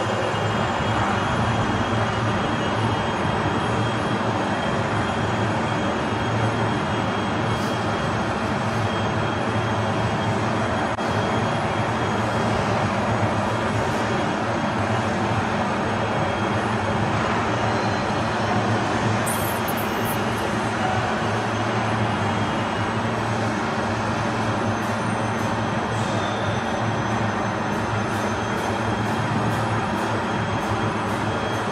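Steady drone of factory machinery in a laminated-glass plant, an even roar with several held hum tones. A brief high squeal comes about two-thirds of the way through, and a run of light ticks near the end.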